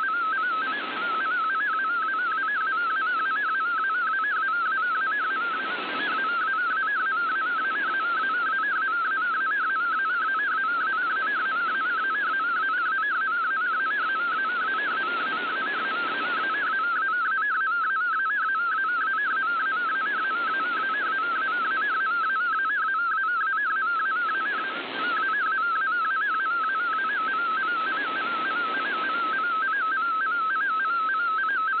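Shortwave reception of an MFSK digital picture transmission: a rapidly warbling data tone, steady throughout as the image is decoded. Behind it is a shortwave band hiss that swells and fades every few seconds.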